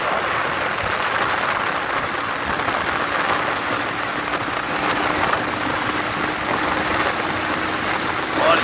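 Steady road noise from a moving vehicle: engine running with tyre and wind noise, and a faint steady hum joining in about two seconds in.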